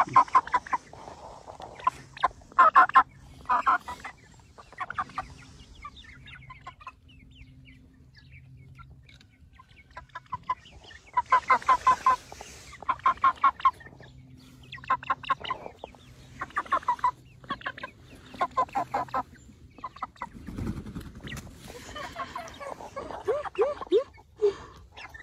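Young broiler chickens calling in repeated short bursts of rapid notes, in clusters with quieter gaps between them.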